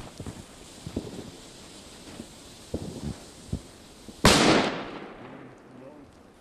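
A firecracker exploding with one loud bang about four seconds in, the report echoing away over about a second. Before it, a few faint pops.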